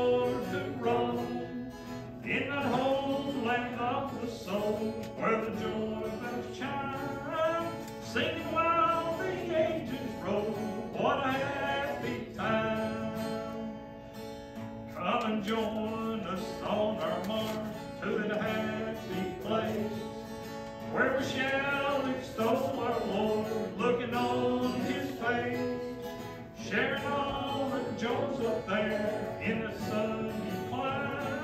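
A hymn sung by voices to acoustic guitar accompaniment, in sung lines with short breaths between them.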